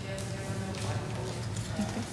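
Faint, indistinct voices in a hall, with a few light knocks over a steady low hum.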